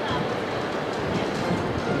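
Steady outdoor rumble of city background noise, even and unbroken, with no voices.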